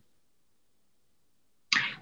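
Near-total silence, with no room tone at all, then a man's voice starts speaking near the end.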